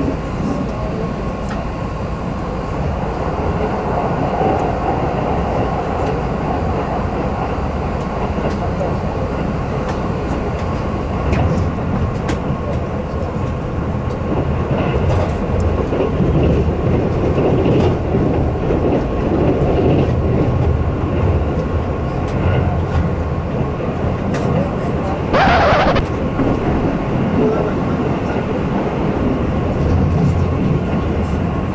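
Keihan electric train running at speed, heard from inside the passenger car: a steady rumble of wheels and running gear with a faint steady high hum. About 25 seconds in there is a brief louder hiss.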